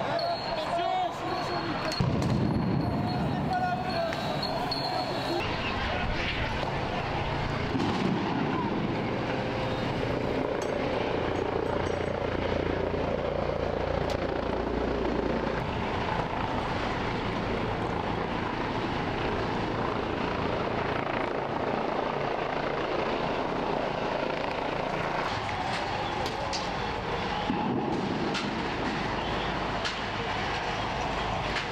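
Riot street noise: a crowd's voices and shouts, not clear as words, over a steady engine drone.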